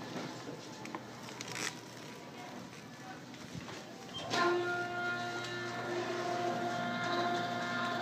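Automatic swing-door operator's motor running with a steady pitched whine as it drives the door arm. It starts abruptly about halfway through and cuts off at the end.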